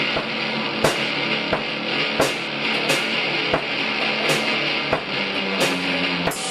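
Blues rock jam on electric guitar over a drum kit, with drum and cymbal hits landing on a steady beat about every three quarters of a second.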